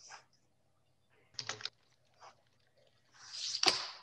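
A few faint clicks and taps, typical of typing on a computer keyboard, then a short rising hiss near the end.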